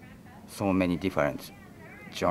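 Speech only: a man's voice saying two short things in Japanese, the first starting about half a second in.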